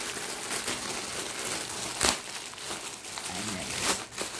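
Clear plastic wrapping crinkling continuously as hands handle and pull at the packaged bags, with one sharp, loud crackle about two seconds in.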